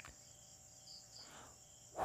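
Near silence: faint room tone under a thin, steady high-pitched tone, with a small click at the very start.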